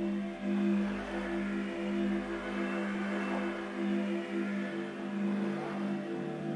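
Slow ambient music of sustained, gently pulsing low notes.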